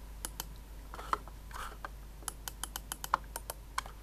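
Mouse-button clicks on a Logitech Portable TrackMan trackball: a few scattered clicks, then a quick run of about six clicks a second in the second half.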